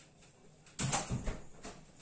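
A sudden knock and scrape a little less than a second in, lasting about half a second, followed by a few lighter knocks: something being handled in the kitchen.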